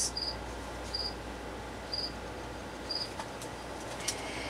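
A cricket chirping: four short, high chirps about once a second, over a steady background hiss.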